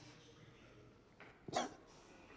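Quiet room tone in a pause of the dialogue, broken about one and a half seconds in by one short vocal sound from a person, such as a scoff or grunt.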